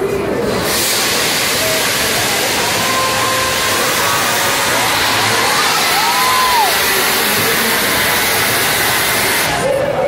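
Stage CO2 jet blasting a white plume of gas: a loud, steady rushing hiss that starts suddenly about a second in and cuts off near the end, over crowd chatter.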